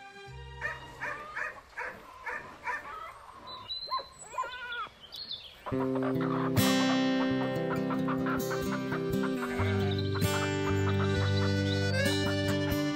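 Recorded farmyard sounds over a low steady hum: short animal calls that rise and fall in pitch and a few high bird-like whistles. About six seconds in, loud folk-style stage music with sustained chords starts.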